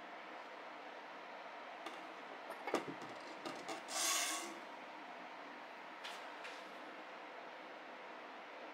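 Handling noise as one fixed-blade knife is put down and another picked up: a few light clicks and knocks around three seconds in, then a brief scrape about four seconds in and a fainter rub near six seconds, over a steady low hiss.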